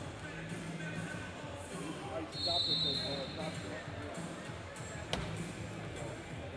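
Large-arena ambience of indistinct background voices. About two and a half seconds in, a short, high, steady whistle-like tone sounds for just under a second, and a single sharp thud comes near the end.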